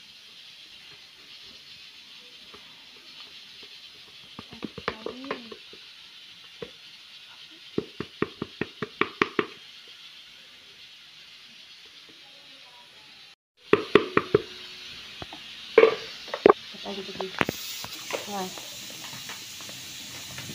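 Steady hiss of a pressure cooker with beans cooking on the stove. About eight seconds in there is a quick run of light taps, and after a brief gap come a few louder knocks and clinks of kitchen utensils.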